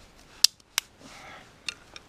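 A dry spruce stick being snapped by hand: two sharp cracks about a third of a second apart, then a smaller crack near the end.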